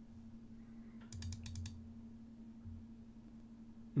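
Faint quick run of about eight light clicks about a second in, from a computer mouse being clicked repeatedly, over a faint steady low hum.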